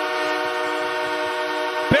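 Hockey arena goal horn sounding one long, steady chord to mark a home-team goal, with the crowd cheering beneath it.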